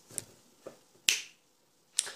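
Four short, sharp clicks, the loudest about a second in.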